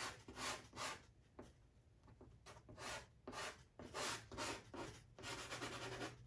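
Soft pastel stick rubbed in short back-and-forth strokes on Pastelmat pastel paper, laying in dark colour: a series of faint scratchy strokes, about two or three a second, with a lull of about a second near the middle of the first half and quicker strokes near the end.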